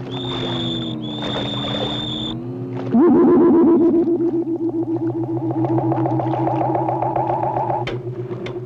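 Cartoon film soundtrack: sustained, wavering tones over a low pulsing drone. A high whistle-like tone sounds for about two seconds near the start. About three seconds in, a lower tone slides up and holds with a fast, regular warble.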